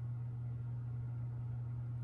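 Room tone: a steady low hum with a faint hiss, unchanging throughout.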